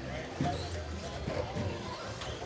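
Indistinct voices in a large indoor race hall over a steady low hum, with a single sharp thud about half a second in.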